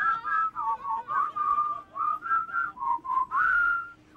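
A person whistling a tune, one clear note at a time in short phrases, ending on a higher held note.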